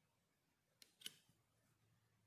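Knitting needle clicking twice about a second in, a quarter-second apart, the second louder, as stitches are picked up on it, with a little yarn rustle after; otherwise near silence.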